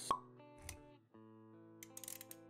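Intro-animation sound effects over soft background music: a sharp pop just after the start, a short low thump well under a second later, then steady held music notes.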